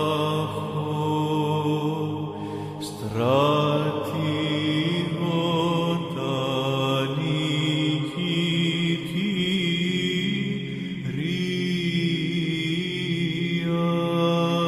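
Slow chanting voices holding long notes over a steady low drone, in the manner of Orthodox Byzantine chant. The melody slides up to a new note about three seconds in and shifts again later.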